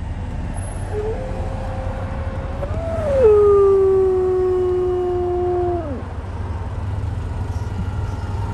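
Wind and road rumble from a moving car, with a dog howling once over it: a long call that rises, drops to a lower held note and tails off downward about six seconds in.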